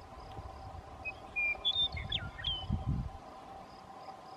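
A songbird sings a brief phrase of a few clear whistled notes and sharp downward-sweeping slurs, starting about a second in and lasting about a second and a half. Behind it are steady insect calls with a faint high chirp repeating a few times a second, and low rumbling that swells briefly near the end of the song.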